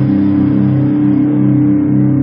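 Electric guitar chord left to ring out, the low notes held steady and wavering slightly while the brighter overtones slowly fade.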